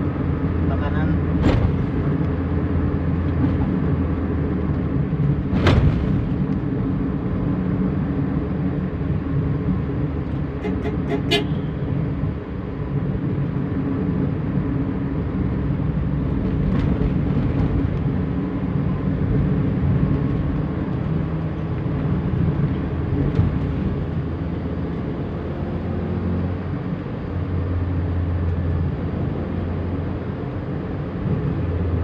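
Steady low drone of a vehicle's engine and tyres heard from inside the cabin while driving, with a few sharp clicks or knocks, the loudest about six seconds in.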